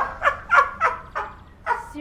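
A man laughing hard: a run of short bursts, each sliding down in pitch, about three a second, easing off past the middle and picking up again near the end.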